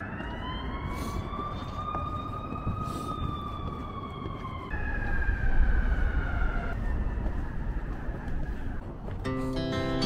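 Emergency vehicle siren in city traffic: one slow wail that rises and then falls a little in pitch for about five seconds, then switches to a higher, steadier tone for about two seconds, over a low rumble of traffic. Music comes in near the end.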